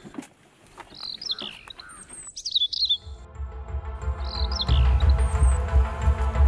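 Birds chirping in short, high, sliding calls a few times, while background music fades in about halfway with long held tones over a deep pulsing bass that grows louder near the end.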